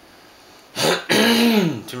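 A man coughing to clear his throat: a short burst about three-quarters of a second in, then a longer rough voiced cough lasting nearly a second.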